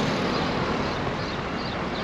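Steady outdoor traffic noise around a busy port: an even rumble and hiss of passing vehicles.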